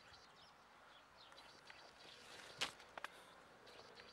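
Near silence in open air, with a few faint bird chirps and two short sharp clicks a little past halfway.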